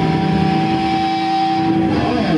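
Electric guitar amplifier holding a steady droning feedback tone over amp hiss, breaking off near the end as the band starts playing the next song.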